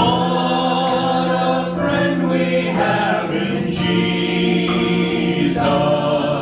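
A worship team of mixed men's and women's voices singing a song together in harmony, holding long notes, with guitar accompaniment.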